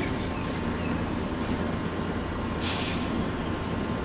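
Steady low rumble of room ventilation, with one short hiss about three seconds in.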